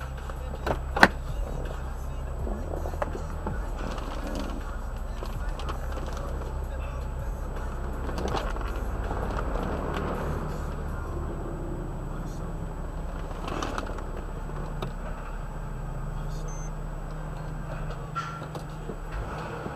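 Auto repair shop background: a steady low hum with faint voices, and a sharp click about a second in.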